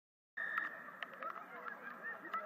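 Silence, then about a third of a second in the field sound cuts in: many distant voices calling and shouting over one another across an open pitch, with a brief high steady tone at the moment it starts.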